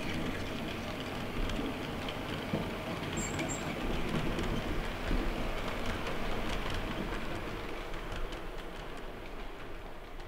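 Märklin H0 scale model train rolling along the track: a steady rolling rumble and rattle of the model's wheels on the rails, with faint clicks.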